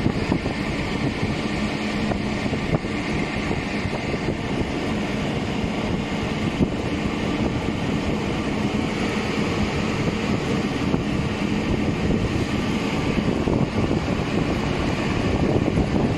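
A steady engine running without pause, mixed with wind noise on the microphone.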